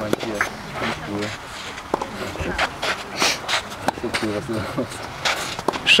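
Tennis balls struck by rackets during a doubles rally on a clay court: several sharp knocks at uneven intervals, with people's voices alongside.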